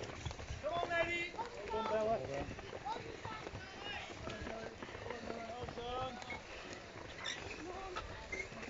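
Runners' footsteps thudding across a wooden footbridge in quick, uneven succession, with indistinct voices calling throughout.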